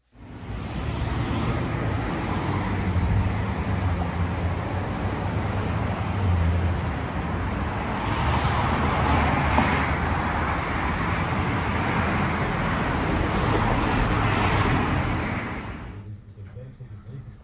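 Steady street traffic noise: a continuous low rumble of passing road vehicles with a hiss, swelling slightly a little past halfway and again near the end.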